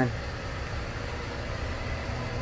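Steady low electric hum from equipment running in a small greenhouse during a test of its evaporative cooling system.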